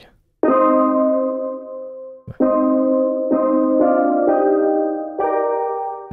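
Sampled steel drum chords from a software instrument built on Roland SC-55 steel drum samples, played with a slowed attack and the low-pass filter turned down, so the notes sound softer and a bit more mellow. One chord rings from about half a second in, then a second chord enters about two seconds in, with further notes added one after another.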